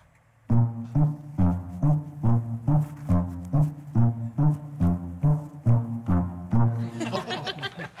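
Sousaphone playing an oom-pah bass figure: short low notes alternating between two pitches, a little over two a second, starting about half a second in and stopping about a second before the end, where laughter follows.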